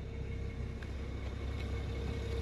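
BMW 325i's 3-litre straight-six petrol engine idling steadily, heard as an even low rumble with a faint steady hum above it.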